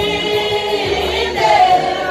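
Church choir singing in long held notes, with a higher note coming in near the end.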